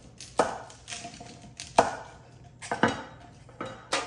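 A kitchen knife chopping through a bundle of asparagus stalks onto a wooden cutting board, trimming off the woody ends. There are several separate, unevenly spaced strikes, the loudest a little under two seconds in.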